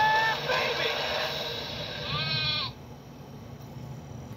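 Film-trailer soundtrack through a portable DVD player's small speaker. A loud rushing sound effect with a brief steady tone is followed by a short wavering creature cry, which cuts off suddenly about three-quarters of the way through. A faint steady room hum is left.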